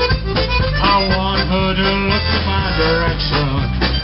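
Live polka band playing an instrumental passage: a harmonica carries the melody over accordion, banjo, bass and drums in a steady beat.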